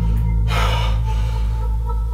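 A man's single heavy breath about half a second in, over a steady low drone of film-score music.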